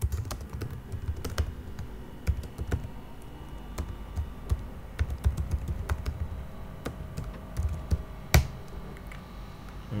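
Computer keyboard being typed on: a run of irregular keystroke clicks as a line of code is entered, with one louder click about eight seconds in.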